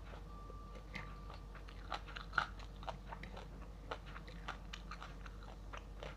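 A person chewing a meal of fried salted fish and rice close to the microphone: irregular crisp crunches and wet clicks, with one louder crunch about two and a half seconds in.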